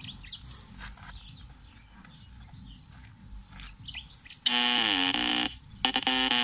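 Birds chirping faintly; about four and a half seconds in, loud music starts: held, steady notes of a song's intro, breaking off briefly just before the end.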